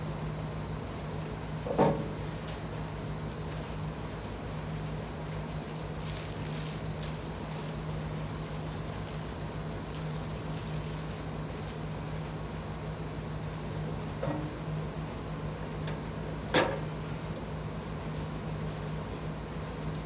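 Painted sheet-steel tool-cart parts being handled and set down on a tile floor: a sharp knock about two seconds in, two smaller knocks near the end, and faint rustling of a bag of bolts in between, all over a steady low hum.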